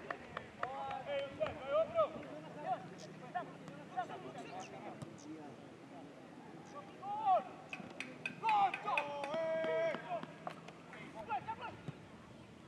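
Footballers' shouts and calls carrying across an open pitch during play, including one long held shout about nine seconds in, with a few sharp knocks from the ball being kicked.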